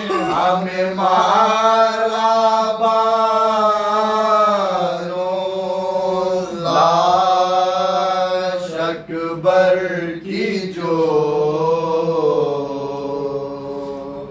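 Soz khwani, a Shia mourning elegy, chanted by a group of men without instruments. Long held notes waver and bend over a steady low note kept up underneath, easing off near the end.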